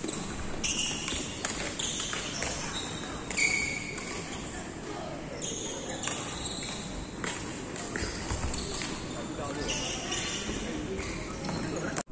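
Echoing hubbub of an indoor badminton hall: distant players' voices, short high squeaks of shoes on the wooden court floor, and sharp knocks of play.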